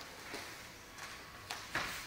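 Faint scuffs and rustles of bare feet and gi cloth on the mat as two judoka grip up and one drops back into a sumi gaeshi throw, with a few soft knocks toward the end.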